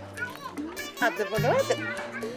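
Speech, high-pitched in places, over background music with a held low note.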